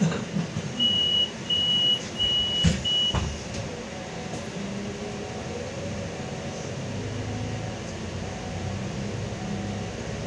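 Four short high-pitched warning beeps inside a Solaris Urbino 18 III articulated city bus, with a few knocks in the first three seconds. Then the bus's engine runs on steadily as the bus moves off, its pitch slowly rising.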